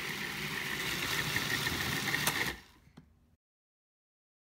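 Steady machine-like hum with a faint high whine. It drops away about two and a half seconds in, with a click, and the sound then cuts off to silence.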